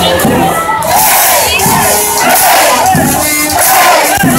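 Large festival crowd singing and shouting together, led by a brass band, with low beats about every second and a bit underneath.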